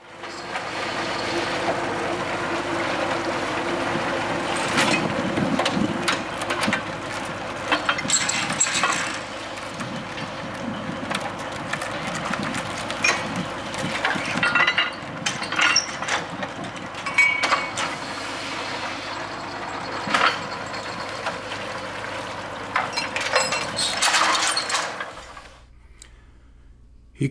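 A truck-mounted well-drilling rig running steadily while a new section of drill stem is added, with repeated sharp metal clanks and knocks from the pipe and rig fittings through the running noise.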